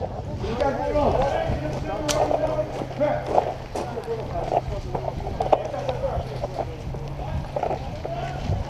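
Indistinct talk of several people in the background, with scattered footsteps and gear clicks and a steady low hum underneath.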